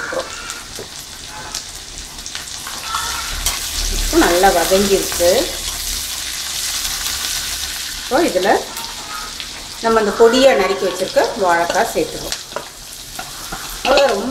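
A tempering of green chillies frying in hot oil in a kadai, with a steady high sizzle, stirred and scraped with a metal spoon.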